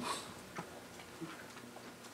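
Faint ticks and light rustles of Bible pages being turned by hand while looking for a passage.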